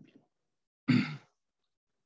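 A man's short sigh about a second in.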